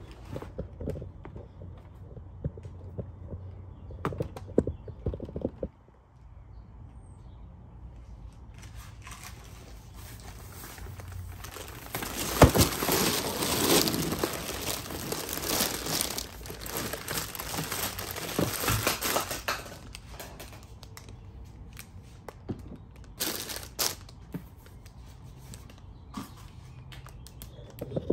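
Plastic-wrapped candy packets crinkling and rustling as they are tipped out of a cardboard box onto a table, loudest for about ten seconds in the middle. A few scattered knocks of handling come before and after.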